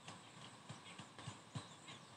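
Near silence, with a few faint light taps and rustles from hands handling a silky blouse and its sleeves on a sewing table.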